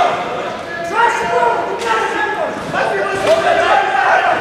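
Raised voices of coaches and spectators echoing in a large sports hall, with a few sharp thumps about halfway through.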